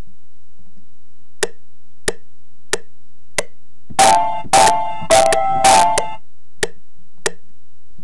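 Software metronome ticking about one and a half times a second through speakers, with four chopped slices of a sampled record triggered from a pad controller in quick succession in the middle, about half a second apart. A steady low hum runs underneath.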